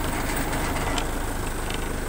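Heli forklift engine idling steadily.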